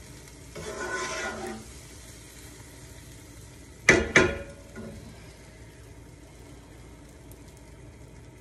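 Wooden spatula stirring and scraping a tuna kebab mixture in a nonstick frying pan over a steady low sizzle. About four seconds in there are two sharp knocks a fraction of a second apart, the loudest sounds, as the utensil strikes the pan.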